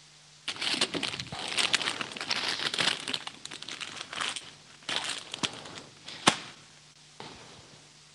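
Plastic bags crinkling and rustling as they are handled, in uneven bursts for about six seconds, with one sharp click near the end.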